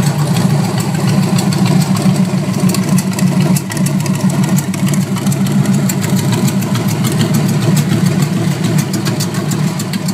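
Hoss Fly bar stool's V8 engine idling steadily through open zoomie headers.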